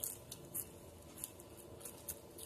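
Close-up chewing of a mouthful of fresh leafy greens: wet crunching and smacking, with about five sharp, crisp clicks spread across the two seconds.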